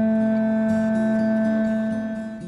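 Hawaiian conch shell trumpet (pū) blown in one long, steady note, with faint background music beneath.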